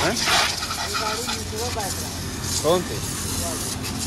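Water jetting from a garden hose spray nozzle onto a motorcycle, a steady hiss, with voices talking now and then over it and a low steady hum underneath.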